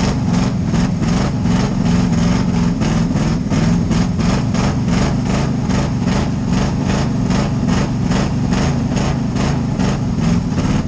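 Pure stock dirt-track race car's engine running at low revs, heard from inside the cockpit, with a steady, evenly repeating lumpy pulse.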